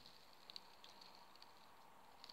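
Near silence: room tone with a few very faint, short ticks.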